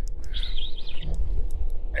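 Wind buffeting the microphone, a steady low rumble, with a brief high warbling chirp about half a second in.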